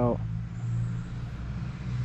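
A vehicle engine running steadily at idle, a low, even hum.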